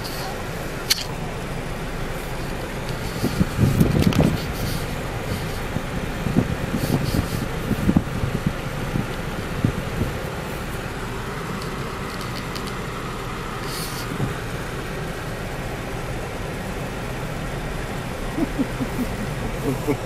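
Steady in-cabin noise of a car rolling slowly down a steep brick-paved street, with a few brief louder patches of bumps and muffled sound about four and eight seconds in.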